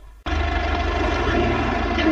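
Heavy truck engine running steadily as the truck drives along a road, cutting in abruptly a moment in after a near-silent pause.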